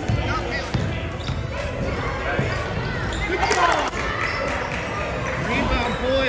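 A basketball being dribbled on a hardwood gym floor, with repeated dull bounces. Indistinct shouts from players and spectators echo in the large gymnasium.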